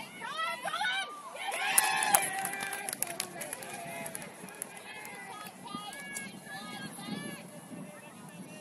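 Several voices of players and sideline teammates shouting calls across an open field, overlapping, with a louder burst of shouting and a few sharp clicks about two seconds in.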